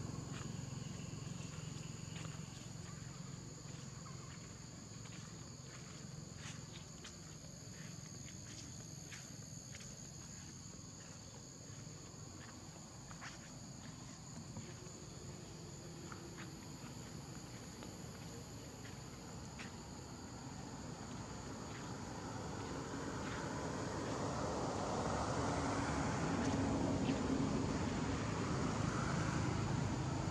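A steady high-pitched insect buzz, with scattered light ticks in the first half. About two-thirds of the way in, a low engine drone builds up and becomes the loudest sound.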